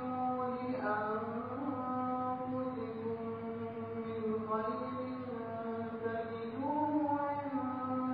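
A man's voice chanting Quranic recitation in long held notes that bend slowly up and down in pitch: an extended melodic passage without breaks.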